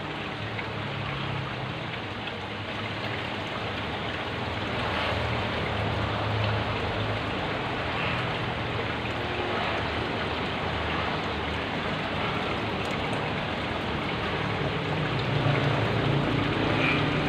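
Aquarium water splashing and bubbling steadily from the tank's aeration and filter flow, with a low hum underneath.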